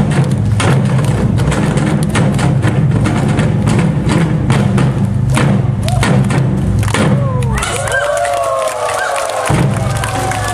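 Korean traditional drum ensemble (barrel drums on stands and a large buk) drumming a fast, dense rhythm of heavy strikes. About three-quarters of the way through the drumming stops and several voices shout over the last drum hits.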